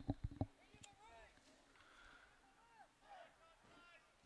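Near silence, with faint, far-off voices calling now and then.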